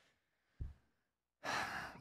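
A mostly quiet gap with a short low thump about half a second in, then a man's audible breath, like a sigh, into a close microphone near the end.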